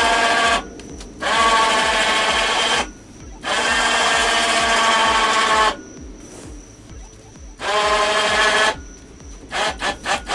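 Electric winch motor lifting a bed platform on steel cables, switched on and off in four runs of one to two seconds each, with a steady whine while it runs. A few light knocks come near the end.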